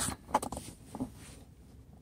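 Plastic cover of a Lexus GS 350's rear 12-volt power outlet being opened by hand: a few small clicks and scrapes in the first half-second, one more faint click about a second in, then quiet handling.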